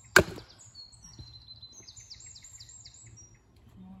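A single hard strike of a wooden mallet on the back of a billhook blade set on a log to cleave the wood: one sharp crack with a brief ring just after the start. Birds sing for a couple of seconds afterwards.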